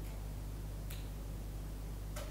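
Steady low hum of a quiet lecture room, with one faint click about a second in.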